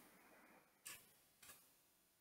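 Near silence with two faint keyboard key clicks, the first a little under a second in and a weaker one about half a second later.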